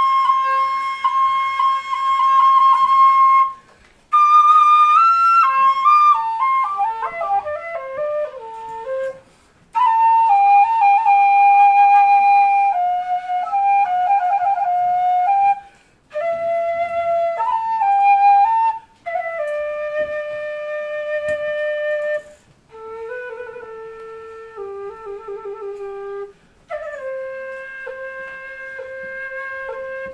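Chinese bamboo flute (dizi) playing a slow solo melody in separate phrases, with long held notes, trills and a quick run of falling notes. The melody moves lower and the last phrases are played softer.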